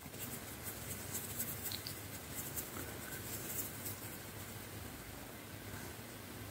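Quiet, steady room hiss from a sensitive microphone, with a few faint, light scratchy clicks in the first few seconds.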